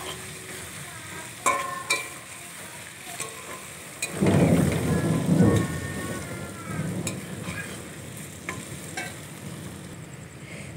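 Diced potatoes and sliced onions sizzling in oil in a wok (kadai), stirred with a spatula that clicks and scrapes against the pan now and then. About four seconds in, a low rumble of thunder rolls in for about two seconds and dies away.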